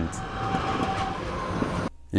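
Train sound effect: the steady noise of a train running on the rails, which cuts off suddenly just before the end.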